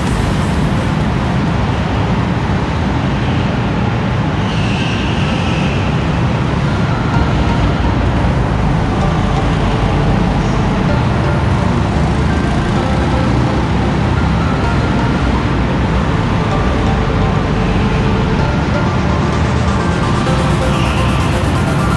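Go-kart engines running steadily in an indoor kart hall.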